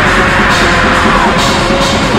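Raw black metal played loud: a dense, unbroken wall of distorted guitars and drums.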